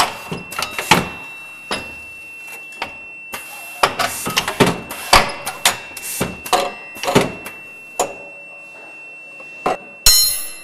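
Automated test bench's grippers and slides handling steel steering racks: a run of irregular mechanical clicks and clacks, over a faint steady high tone.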